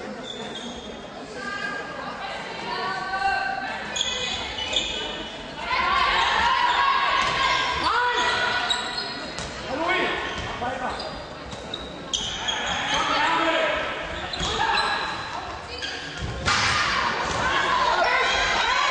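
Handball game in an echoing sports hall: players and spectators shouting, with the ball bouncing on the court floor. The shouting grows louder about six seconds in and again near the end.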